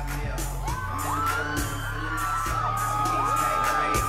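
Live R&B concert music over a club PA: a bass-heavy beat, with several voices whooping and singing over it and one long held high note in the second half.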